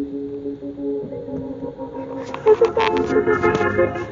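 Music from a car radio: held, organ-like notes at first, then a busier passage of quick short notes from about halfway.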